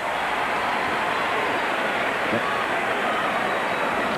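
Basketball arena crowd noise: a steady, dense din of many voices with no single sound standing out.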